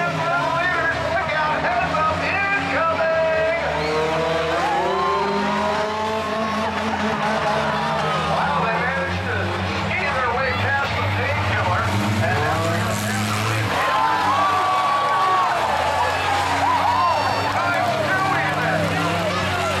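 Several stock-car engines revving up and down as the cars slide around the track on bare rear rims fitted with welded steel plates in place of tyres, with crowd voices over them.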